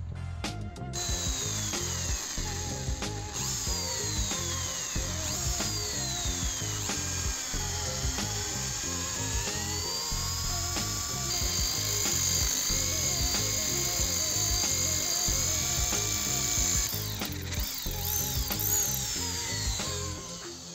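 Power drill boring into a small steel block. Its high whine falls in pitch several times, then holds steadier for several seconds before a few short rises and falls near the end. Background music plays under it.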